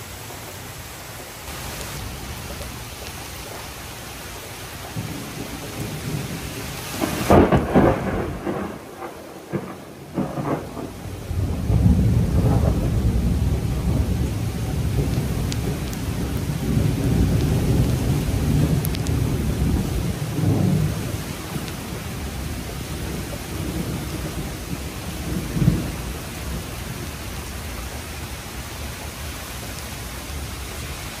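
Heavy tropical-storm rain falling steadily, with thunder: loud crackling claps about seven to ten seconds in, then a long low rolling rumble lasting about ten seconds, and a last smaller clap a few seconds before the end.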